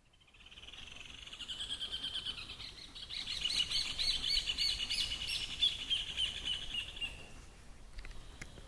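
A bird singing one long, rapid series of repeated chirping notes that grows louder about three seconds in and fades out near the end.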